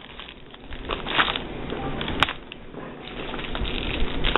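Cellophane bags crinkling and rustling as they are handled and set down on a table, with one sharp click a little past halfway.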